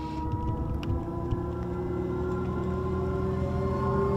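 Audi e-tron Sportback electric SUV pulling away at low speed: a steady, layered electric hum that rises slowly in pitch as it gathers speed.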